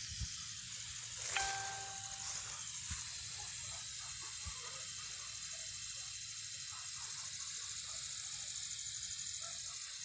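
Steady high-pitched hiss of open-field ambience, with a brief beep-like tone about a second and a half in and a few faint knocks in the first few seconds.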